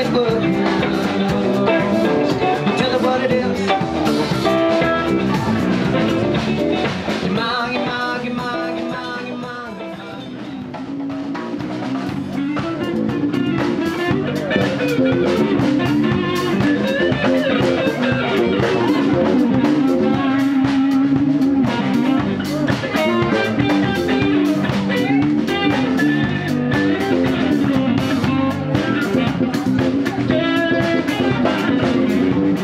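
Live band playing an instrumental stretch: semi-hollow electric guitar, electric bass and drum kit. The music drops quieter about ten seconds in, then builds back up.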